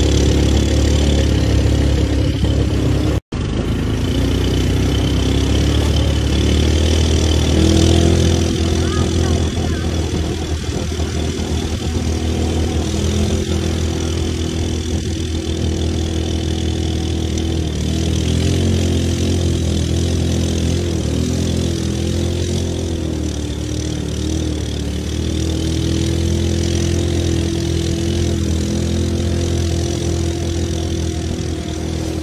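Quad bike (ATV) engines running on the move, their pitch wavering up and down with the throttle. The sound cuts out for an instant about three seconds in.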